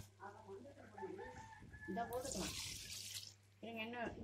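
Water poured from a steel tumbler into an aluminium pressure cooker over rice, a splashing pour lasting about a second midway through.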